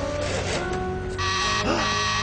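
Cartoon sound effects over background music: about a second in, a buzzing electronic tone sounds for about a second, with a short arching pitch glide in the middle of it.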